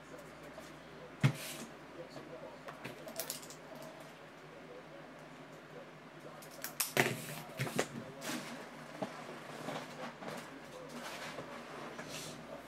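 Small objects handled and set down on a tabletop: a trading card in a rigid plastic top loader and a marker pen, giving light clicks and taps. There is one sharp click about a second in and a cluster of taps just before the middle of the stretch and a little after.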